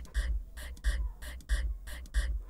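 Playback of a raw home-recorded vocal track between sung phrases. Faint rhythmic ticks and a low thump about every two-thirds of a second sit over background air-conditioner noise, the "oozing" that the track is to be cleaned of.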